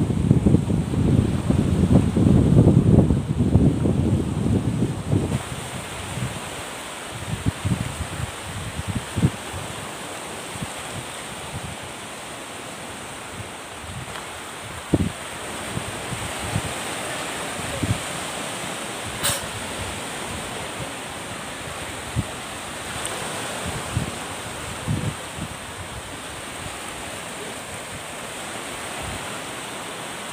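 Surf washing onto a pebble beach, with wind buffeting the microphone: heavy gusts in the first few seconds, then a steadier hiss of the sea with occasional low bumps and one sharp click about two-thirds through.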